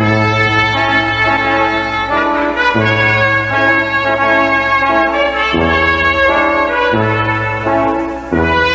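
Brass music playing slow, held chords over a steady bass, the chords changing every two seconds or so.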